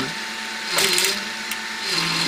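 Pellet extruder driven by a geared NEMA 17 stepper, running in fast mode: PLA pellets crunching in the feed screw while the extruder stalls, with a sharp click about a second and a half in. The stalls show that the stepper lacks the torque to turn the screw at this rate.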